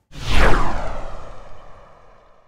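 Whoosh transition sound effect: a loud sweep that swells in suddenly, falls in pitch with a deep rumble beneath, and fades out over about two seconds with a ringing tail.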